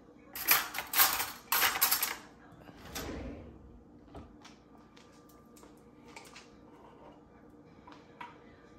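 Metal cutlery clattering in a few loud, rattling bursts as a spoon is grabbed, followed by a dull thump about three seconds in and then faint scattered clicks.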